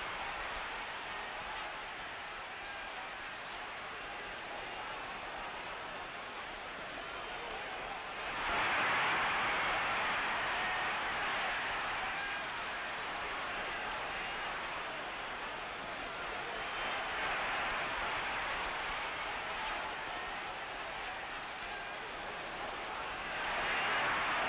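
Boxing crowd noise, a steady din of many voices that swells louder about eight seconds in and again, more mildly, a little past the middle.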